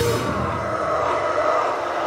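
Amplified electric guitar left ringing and feeding back as a crust punk song ends: the drums and low end cut out, and a few steady, slightly wavering feedback tones hang on.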